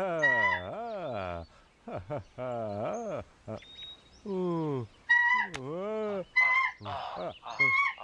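Cartoon caveman's wordless grunts and moans, sliding up and down in pitch, broken by four short, flat honks, the loudest about five seconds in.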